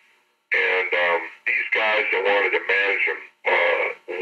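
Speech only: a man talking in an interview, after a short pause at the start.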